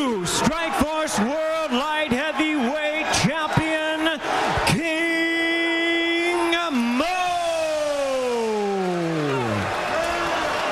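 A man's voice calling out in drawn-out, pitch-bent syllables, then holding one long note and sliding slowly down in pitch for nearly three seconds.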